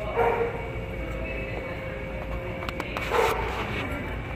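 A dog barking twice, two short barks about three seconds apart, over a steady low hum.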